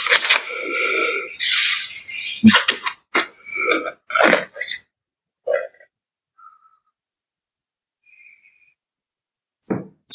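A person exhaling and laughing breathily close to a microphone, heard through a video call. The sound runs for about three seconds, then breaks into a string of short puffs that stop about halfway through.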